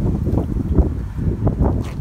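Wind buffeting a handheld camera's microphone outdoors, a steady low rumble with a brief click near the end.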